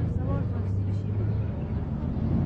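Steady low rumble of city traffic, with brief faint voices in the first half-second.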